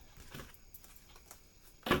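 Tarot cards being handled on a table: faint scattered clicks and card rustling, with one sharper knock near the end.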